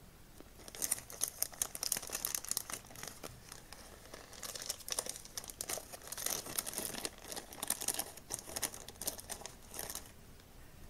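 Small clear plastic parts bag crinkling as it is handled and opened, in quick irregular crackles starting about half a second in.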